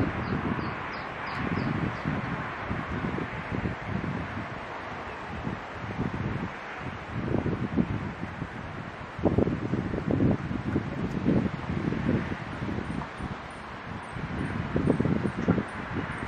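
Wind on the microphone in irregular low gusts over a steady hiss of wind through the trees' leaves, with a man's voice talking underneath, partly masked.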